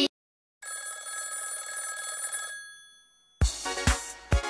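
A bright, bell-like electronic chime of several steady ringing tones, held for about two seconds and then fading away. Near the end, music with a steady thumping beat starts.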